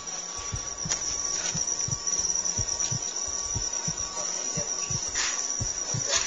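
A continuous high-pitched insect trill, like crickets, over music with a low beat of about two thumps a second.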